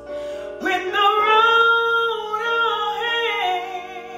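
A woman singing a gospel song, entering about half a second in and holding one long note, over a piano backing track.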